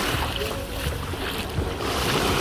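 Small sea waves lapping and washing on a sandy shore, with wind rumbling on the microphone.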